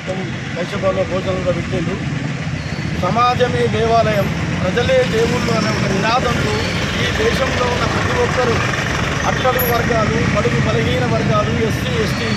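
A man speaking in Telugu, with a steady low rumble of street traffic behind.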